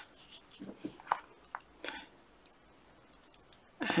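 Faint soft clicks and rustling of circular knitting needle tips and yarn as a stitch is worked, a few small clicks in the first two seconds.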